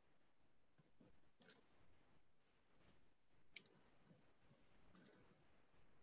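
Computer mouse button double-clicked three times, about a second and a half to two seconds apart, with near silence in between.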